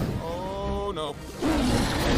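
Animated film action soundtrack: a drawn-out cry held steady for most of a second, then a burst of rumbling, crashing noise.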